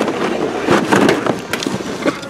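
Plastic blister-card packaging of die-cast toy cars crinkling and clattering as the packs are handled on a store peg, a run of irregular clicks and rustles close to the microphone.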